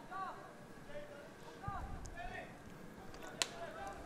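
Football players' short shouts carrying across the pitch, several brief calls over a steady open-air background, with one sharp knock about three and a half seconds in.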